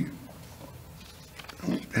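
A pause in a man's speech: a drawn-out word trails off as it begins, then quiet room tone, and he starts speaking again near the end.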